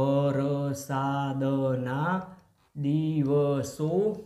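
A man's voice slowly intoning words in long, drawn-out, sing-song syllables, like dictating a sentence aloud while writing it: two long phrases with a short pause between them.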